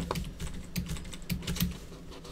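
Computer keyboard being typed on: a run of quick, irregular key clicks.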